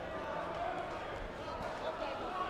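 Sports hall ambience: indistinct overlapping voices with occasional dull thuds from taekwondo footwork and kicks on the foam mats.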